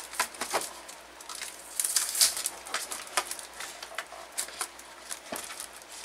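Thin plastic shrink-wrap being peeled off a cardboard box and crinkled by hand, in irregular crackles and rustles.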